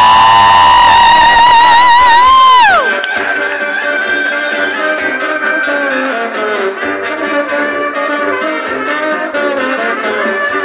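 Live brass band at a concert. A loud held high note with vibrato lasts about three seconds and then falls sharply away in pitch, and the band plays on with brass to the fore.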